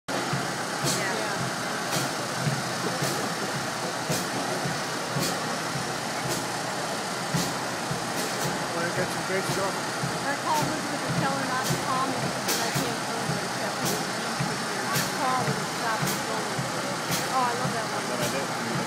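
Busy city street ambience: steady traffic noise with the voices of a crowd mixed in.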